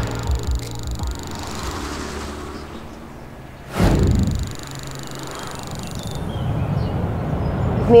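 Television title-card sound design: a whoosh and hit at the start, steady sustained tones underneath, and a second whoosh about four seconds in. The low rumble of car road noise fades in near the end.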